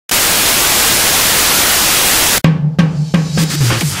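Channel intro sting: a loud, steady hiss like TV static for about two and a half seconds, cut off suddenly, then a quick run of about five drum hits over a deep bass tone.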